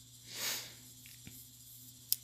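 Quiet pause between spoken phrases, with one soft breath-like hiss about half a second in and a faint tick later on.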